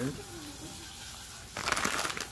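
A sink tap is turned on and water starts running, a steady rush that begins suddenly about one and a half seconds in.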